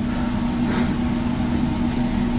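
A steady low hum at one pitch, held throughout, over a low rumble of room noise.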